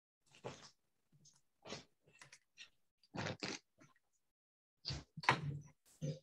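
Quiet, scattered short mouth noises and breaths of a person chewing a mouthful of cheese, about ten brief sounds with silent gaps between them.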